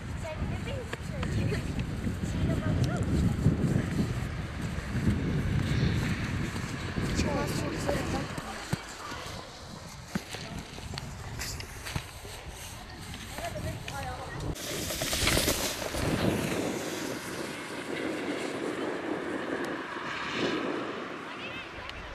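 Children's voices and shouts in the background over wind noise, with heavy wind rumble on the microphone for the first several seconds and a brief loud hiss about fifteen seconds in.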